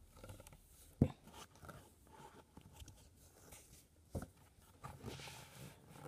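Close handling noises from a cardboard model-train box being opened: a sharp knock about a second in and another about four seconds in, with light clicks and rustling between.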